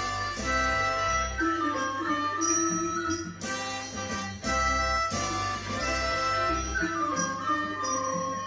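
Instrumental recording of a Thai classical tune: a solo violin melody with downward pitch slides, about a second and a half in and again near the end, over band accompaniment with a bass line that sounds at even intervals.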